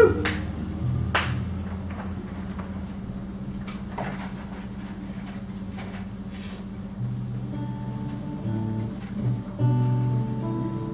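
Acoustic guitar played softly, single notes plucked and left to ring, with more of them from about seven seconds in. The last of a round of applause dies away right at the start.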